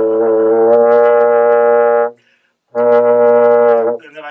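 French horn holding a low-register note, its pitch wavering slightly in the first second as it is bent with the lips and brought back. It stops about two seconds in and, after a half-second break, the same note is played again. This is the 'do-ah' lip-bend exercise, meant to open up the space between the lips and counteract a tight, buzzy embouchure.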